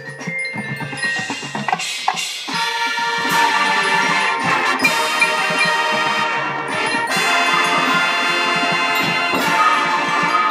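Marching band playing, with the front ensemble's mallet percussion and drums heard along with the winds. It starts thinner and fills out about two and a half seconds in.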